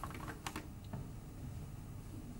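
A few faint clicks in the first second, then a low steady hum.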